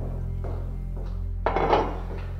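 Background music with a steady low drone; about one and a half seconds in, glassware is set down on a granite countertop with a short, loud thunk.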